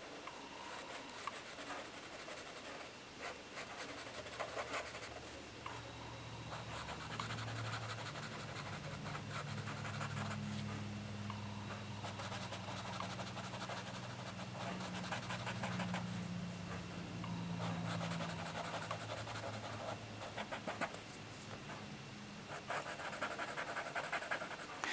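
Bic felt-tip marker rubbing on paper in many short, scratchy coloring strokes as the stripes are filled in. A low steady hum runs underneath for much of it.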